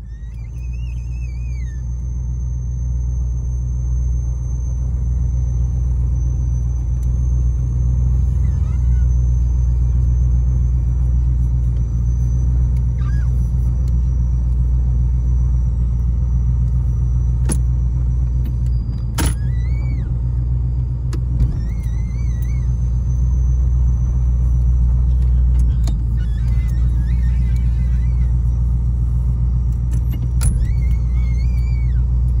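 Chevrolet Caprice Classic's engine running with a steady low rumble, heard from inside the cabin as the car moves slowly. A few faint chirps and a couple of sharp clicks sit over it.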